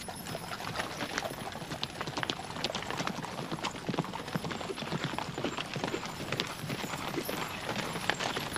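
Hoofbeats of a group of ridden horses moving over dry ground: a dense, irregular clatter of many overlapping hoof strikes at a steady level.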